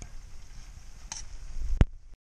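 Shrimp sizzling in melted butter in a stainless steel frying pan, with a fork stirring and tapping against the pan. A single sharp click near the end is the loudest sound.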